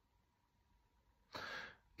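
Near silence, then a man's short audible breath a little over a second in.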